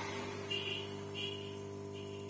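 Quick 850A hot-air rework station's blower running at a very low airflow setting after a circuit modification, giving a steady hum with a faint airy hiss.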